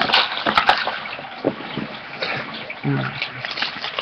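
Trading cards and pack wrappers being handled: irregular rustling and crinkling with small clicks as cards are shuffled and sorted. A brief low vocal murmur about three seconds in.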